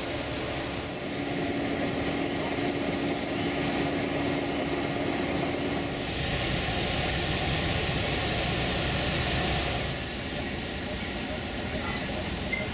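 Diesel locomotive engine idling with a steady hum. About six seconds in, a loud hiss joins it for about four seconds.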